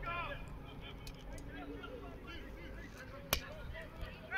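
Distant shouted voices across an outdoor American football field, over a low outdoor rumble, with one sharp click a little over three seconds in.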